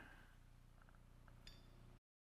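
Near silence: faint room tone with a low hum and a few tiny faint clicks.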